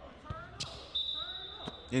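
A basketball bouncing a few times on a hardwood gym floor, with faint voices from the crowd in the echoing gym.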